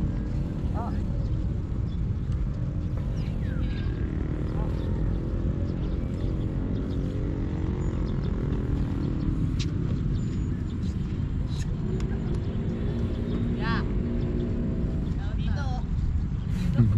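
Outdoor ambience of a riverside park: a steady low rumble with a faint engine-like hum, likely distant traffic, and distant voices calling out now and then, once near the start and again near the end.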